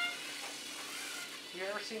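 A small FTC competition robot driving across the foam-tile field, its drive motors and wheels making a steady, hissy running noise. The tail of a held electronic tone ends right at the start, and a voice comes in near the end.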